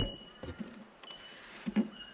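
A few faint clicks and knocks of hands working the plastic front panel of an EcoFlow Delta 2 portable power station, under a thin, steady, high insect drone that comes and goes.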